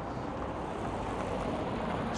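Steady roadside traffic noise, an even rumble and hiss that grows slightly louder towards the end.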